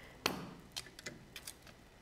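A few light clicks and taps of plastic corner punches and card being handled on a glass craft mat, the sharpest about a quarter of a second in, then fainter ticks.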